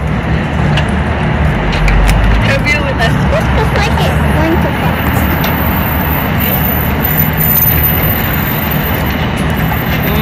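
Steady city street noise: road traffic running, with people's voices in the background.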